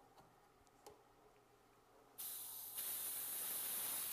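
Compressed air hissing steadily out of the drain at the base of a dental unit compressor's reservoir, starting suddenly about halfway through as the drain nut is unscrewed: the tank is being drained of air and moisture. A faint click comes about a second in.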